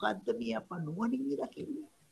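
Only speech: a man's voice talking with a drawn-out, wavering pitch, stopping just before the end.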